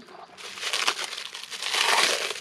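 Clear plastic wrapping crinkling as it is pulled off the blue plastic base of a small egg incubator, starting about half a second in and getting louder.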